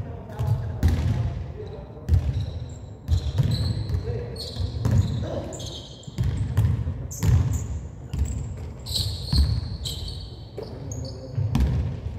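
Basketball bouncing on a hardwood gym floor during play, irregular thuds every second or so, echoing in the large hall, with short high-pitched sneaker squeaks scattered through.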